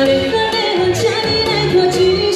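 A woman singing a pop song into a hand-held microphone over instrumental accompaniment, her voice amplified through a public-address system.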